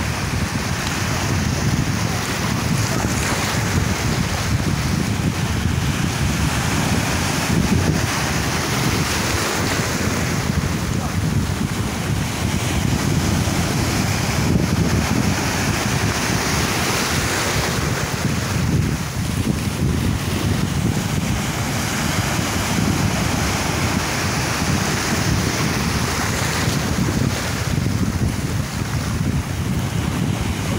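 Wind buffeting the microphone: a steady rushing noise, heaviest in the low end, with no let-up.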